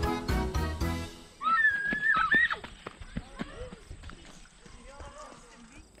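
Background music with a steady beat cuts off about a second in; then children shriek with delight in high squeals, followed by fainter scattered calls and chatter of children's voices.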